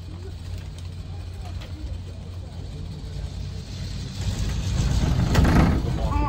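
Low rumble and wind noise inside a descending cable car cabin with its window open, swelling louder near the end.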